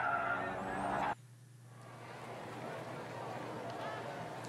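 Diecast toy cars rolling down a plastic track through the finish gate, a buzzing hum that cuts off suddenly about a second in, followed by a faint steady hiss.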